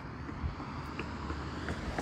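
Steady low outdoor rumble of background noise with a few faint ticks, with no distinct source standing out.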